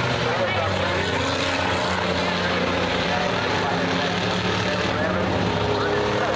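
A pack of enduro stock cars running laps on a dirt oval: many engines running together in a steady din, their pitches sliding up and down as cars pass and change speed. Spectators' voices are mixed in.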